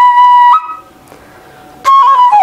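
Bamboo transverse flute (bansuri) played solo: a steady held note, a short step up in pitch, then the playing breaks off for about a second before a new note comes in near the end.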